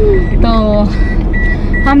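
Car cabin noise while driving: a steady low engine and road rumble, with a short high electronic beep repeating about twice a second.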